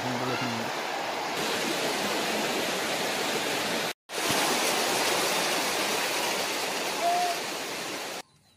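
Floodwater rushing across a road: a steady noise of fast-flowing water. It breaks off for an instant about halfway, then carries on.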